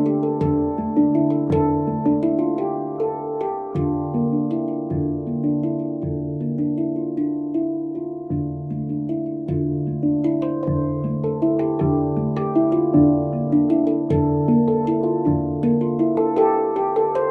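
Stainless steel 10-note handpan tuned to D Kurd, played with the fingers of both hands: overlapping ringing notes with sharp attacks, and a low note struck about once a second beneath the higher notes.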